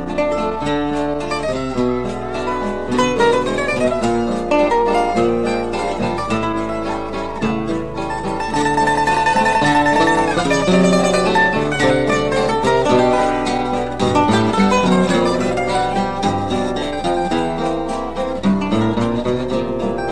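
Choro tune played on a plucked-string ensemble: cavaquinho leading a quick melody over acoustic guitar accompaniment, with a held tremolo note about halfway through. A steady low hum runs beneath the old recording.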